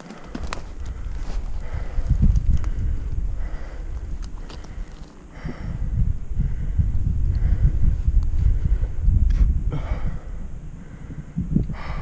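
A man breathing hard and heavily after pushing a mountain bike up a very steep slope, with a breath every second or two. Low rumbling buffets on the helmet camera's microphone swell and fade twice.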